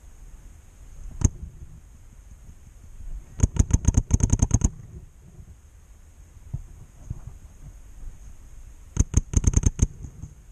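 A paintball marker firing: a single shot about a second in, a rapid string of about a dozen shots around four seconds in, another lone shot, and a second quick burst of about eight shots near the end.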